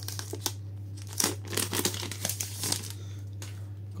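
Clear plastic film wrapping being peeled off a tablet, crinkling and tearing in irregular crackles that thin out in the last second.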